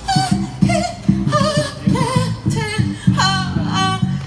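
Live band music from a drum kit and keyboards, with a steady bass line under a wavering, vibrato-laden lead melody.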